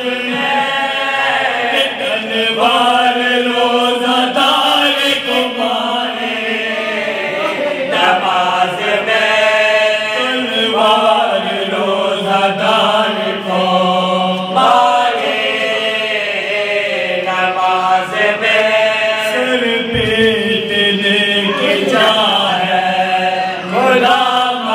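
A group of men chanting a marsiya, a Shia mourning elegy, with no instruments. One lead voice sings into a microphone and several others join in chorus, in drawn-out melodic phrases a few seconds long.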